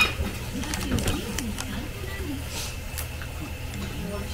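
Café room sound: indistinct voices talking in the background, with a few light clicks and knocks of tableware and a sharper click right at the start.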